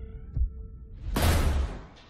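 Horror-trailer sound design: two low heartbeat-like thumps under a held, slightly rising pitched drone that stops a little under a second in. Then a loud noisy whoosh swells up and fades away before the end.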